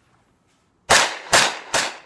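Chiappa M1-9 carbine, a 9mm replica of the M1 carbine, firing three shots in quick succession about a second in, less than half a second apart.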